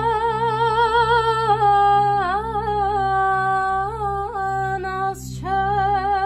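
A woman's voice singing an Armenian traditional song, holding long notes with a wavering vibrato over a low steady drone. The held note dips briefly about two seconds in, and a quick breath just after five seconds leads into the next note.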